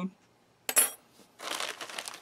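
A metal FRED ration tool (can opener, bottle opener and spoon) set down on a wooden table with a single clink a little under a second in, then a plastic bag crinkling as it is handled.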